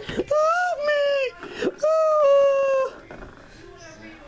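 A child's high-pitched voice making two long, drawn-out wailing cries without words, with a couple of short knocks; the last second is quieter.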